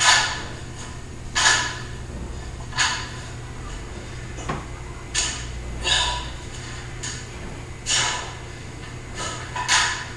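Sharp, forceful breaths, about eight of them, roughly one every second or so, in time with the reps of a dumbbell overhead exercise, over a steady low hum.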